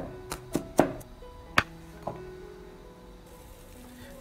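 Kitchen knife mincing garlic on a cutting board: four quick chops in the first second, then one more a little later. Soft background music with held notes plays throughout.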